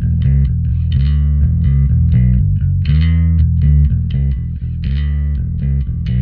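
Electric bass line played through the UAD Gallien-Krueger 800RB bass amp plugin: a run of quick, evenly paced notes with a heavy low end.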